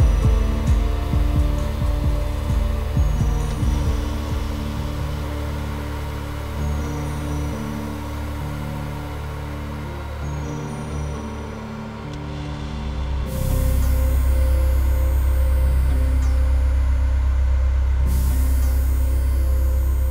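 Live darkwave electronic music played on hardware synthesizers: a low pulsing beat fades out over the first few seconds, leaving held synth chords. About 13 seconds in, a loud low bass drone and a high hiss come in suddenly and hold.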